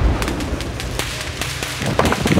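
Low rumble of an explosion dying away, broken by scattered sharp cracks.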